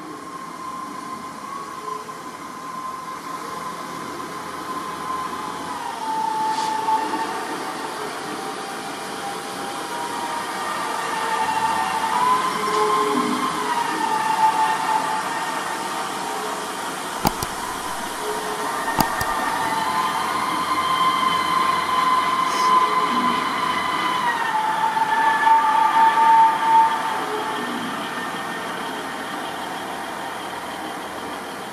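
Diesel multiple unit running in the station. Its engine whine steps up and down in pitch several times over the noise of the train. There are two sharp clicks a little past halfway.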